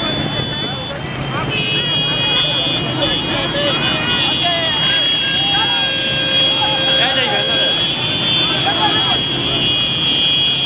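Many small motorcycles running together over men's shouting voices. A set of high steady tones comes in about a second and a half in and holds to the end.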